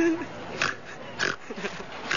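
A person imitating a pig with short snorting oinks, mixed with laughter.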